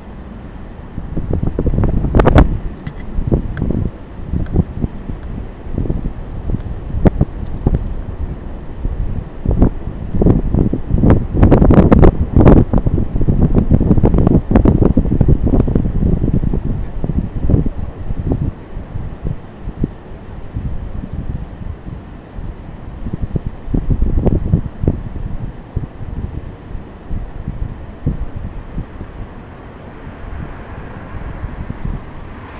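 Wind buffeting the camera microphone in uneven gusts, as a low rumbling noise that swells loudest in the middle and eases off toward the end.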